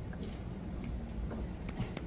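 Quiet room tone in a large hall: a low background rumble with a few faint scattered clicks and taps.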